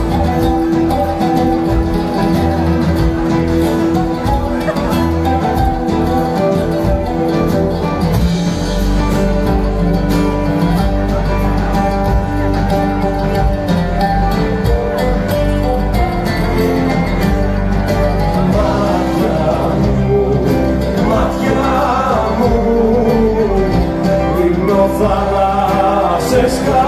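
Oud playing a plucked melodic solo over steady band accompaniment with a low bass line, during an instrumental break in a live Greek song.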